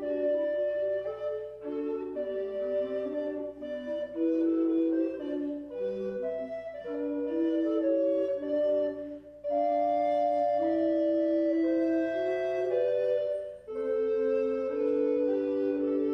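A trio of recorders of different sizes, two long wooden ones and a smaller dark one, playing a slow piece in three parts with overlapping held notes. The playing breaks off briefly between phrases about nine and thirteen and a half seconds in.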